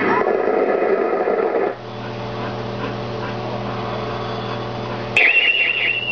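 Ukiyo-e pachinko machine sound effects: a voice-like effect for the first couple of seconds, then a steady low hum, then a bright, warbling high chime that starts about five seconds in, as the reels stop on a matching set of three symbols.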